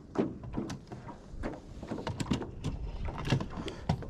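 Scattered light clicks and knocks over a steady low rumble, from a rod and baitcasting reel being handled and cranked in a small boat during a lure retrieve.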